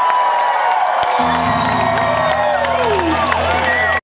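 Live funk band playing an instrumental over a cheering crowd. Long sliding high notes run throughout, and a low held note comes in about a second in.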